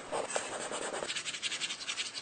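Pen or marker scratching across a drawing surface in quick repeated strokes, the drawing sound of a whiteboard-style illustrated animation; the lower, fuller part of the scratching drops away about halfway through, leaving a thinner, higher scratch.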